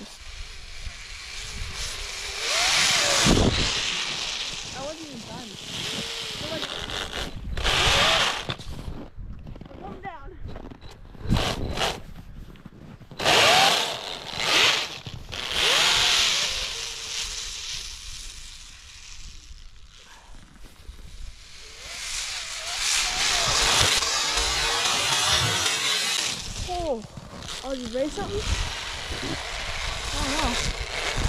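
3D-printed Alpha 6 RC snowmobile's motor whining in repeated bursts of throttle as its track churns through snow, with swells and lulls as it speeds up and slows.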